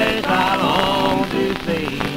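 Old-time mountain string band music from a 1948 78 rpm shellac record, heard between sung lines. Under it runs the record's surface crackle, with scattered clicks.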